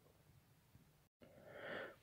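Near silence: faint room tone, with a moment of dead silence at an edit cut about a second in and a faint short sound near the end.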